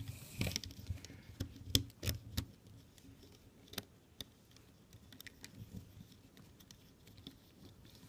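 Small clicks and taps of fingers working rubber loom bands off the plastic pegs of a Rainbow Loom, several in the first couple of seconds, one more near the middle, then only faint ticks.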